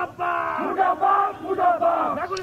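A group of male protesters shouting slogans together in a chant.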